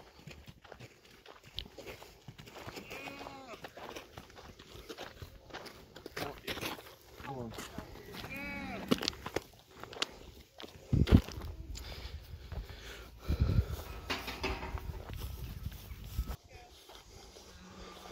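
Cattle calling a few times, each call about a second long, rising and then falling in pitch, over the shuffle of walking on gravel and grass. There are a couple of low thumps on the microphone partway through.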